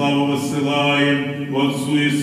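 Eastern Orthodox liturgical chant by male voices: sung sustained notes that step to a new pitch every second or so.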